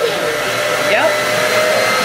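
A loud, steady whir of an electric motor or fan, with several fixed hum tones, and a brief spoken "yep" about a second in.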